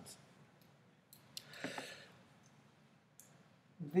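Quiet pause in a man's lecture: two short faint clicks, then a soft breath, with his speech starting again near the end.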